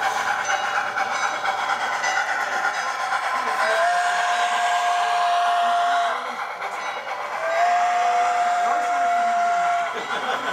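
Steam-whistle sound from an HO-scale model Santa Fe 4-8-4 steam locomotive: two long steady blasts, the first beginning a little past three and a half seconds in and the second about seven and a half seconds in. Beneath them runs the steady rolling noise of the passing model freight train.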